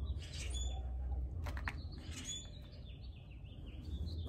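Small birds chirping in short, quick gliding notes, over a steady low rumble, with a couple of faint clicks about a second and a half in.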